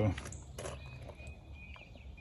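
Quiet outdoor ambience with a few faint, short bird chirps.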